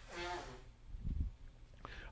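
A faint, short breathy vocal sound at the start, then a soft low thump about a second in, over quiet room tone.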